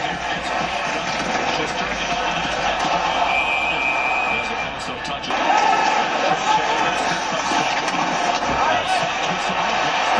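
Televised hockey game: commentary over steady arena crowd noise, with the crowd growing louder about five seconds in as the Rangers score a power-play goal.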